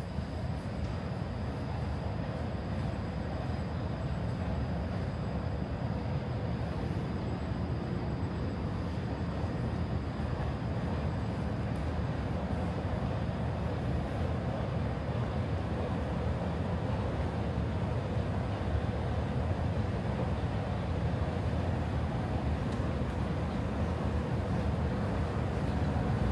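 Steady mechanical drone of running subway-station escalators, growing gradually louder.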